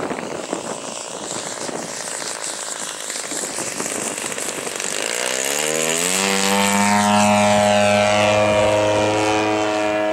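Two-stroke 85cc gas engine of a large Hangar 9 Sukhoi RC aerobatic plane, rough and noisy at first, then rising in pitch and growing loud as the plane passes close and the revs climb, then holding a steady high-revving drone.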